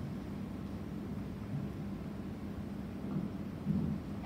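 Steady low rumble of room noise with a constant faint hum, and a brief louder low swell near the end.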